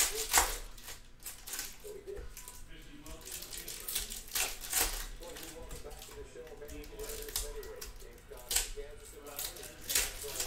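Foil trading-card packs crinkling and tearing as they are ripped open by hand, with cards being shuffled between the tears. Several sharp crackling bursts stand out, the loudest at the very start and again about halfway through.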